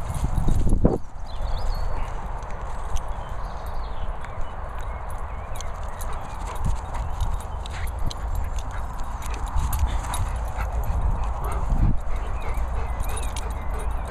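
Wind rumbling on the microphone of a handheld camera held out of doors, over a steady rushing hiss, with scattered small clicks and knocks.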